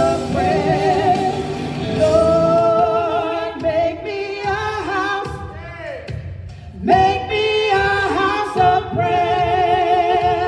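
Two women singing a gospel worship chorus into microphones, holding long wavering notes and sliding between pitches. The singing drops away for a moment about six seconds in, then comes back strong.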